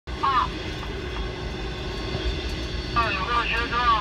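Steady low rumble of a passenger train running, heard from inside the carriage, with a short voice about a quarter second in and Mandarin speech from about three seconds in.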